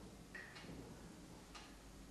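Near silence: faint room tone with a few soft ticks.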